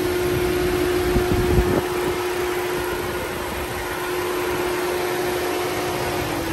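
Idling 1.5-litre four-cylinder engine of a 2018 Chevrolet Sail, heard close up in the open engine bay: a steady whirring hum with one constant tone. There are a few soft knocks about one to two seconds in.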